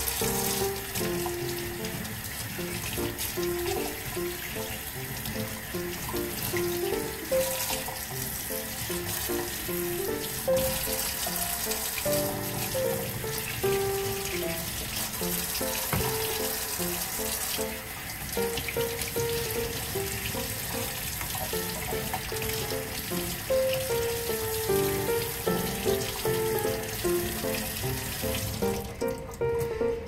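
Kitchen tap running into a stainless steel sink, the water splashing over green onions and pork being rinsed in a colander, and stopping about a second before the end. A simple background music melody plays over it.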